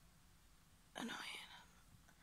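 Near silence for about a second, then a woman says one word softly and breathily, close to a whisper.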